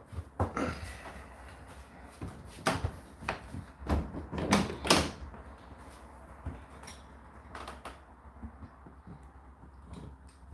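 Plastic door of an Indesit IDC8T3 condenser tumble dryer being pushed shut, then a string of sharp knocks and clicks, the loudest about three to five seconds in.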